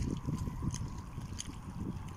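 Seaside ambience: wind rumbling on the microphone, with small waves lapping against the breakwater rocks and a few faint clicks.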